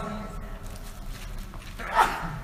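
A pause in a man's lecture, holding low room noise and hum. A short noisy sound comes near the end as his voice picks up again.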